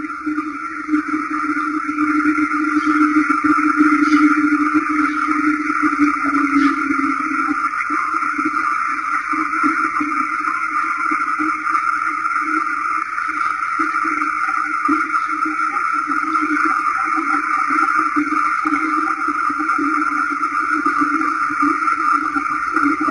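A loud, steady drone, unbroken for about twenty seconds, with a low hum beneath a stronger higher band of noise.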